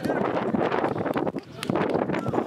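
Wind buffeting the camera's microphone: a rough, uneven rush of noise that drops briefly about one and a half seconds in.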